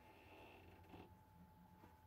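Near silence, with a faint squeak of a marker pen writing on a battery's plastic top during the first second, over a low steady hum.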